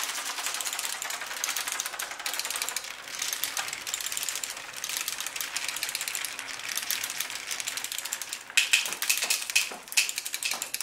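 Steel marbles clattering through clear plastic tubing and a marble demagnetizer: a dense, rapid, continuous clicking of marble against marble and tube, with sharper, louder clicks near the end.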